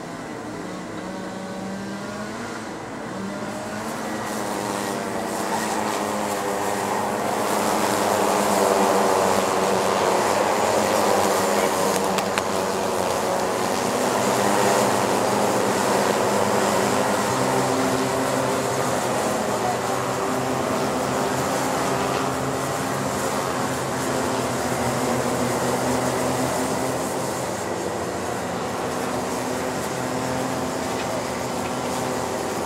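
A pack of Rotax Micro Max cadet karts' 125cc two-stroke engines racing past, several engine notes overlapping and rising and falling in pitch. The sound grows louder over the first several seconds as the karts come nearer, then holds.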